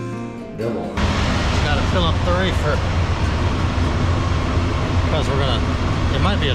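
Acoustic guitar music that cuts off about a second in, followed by the steady low rumble of idling diesel truck engines. A few short snatches of a voice sound over the rumble.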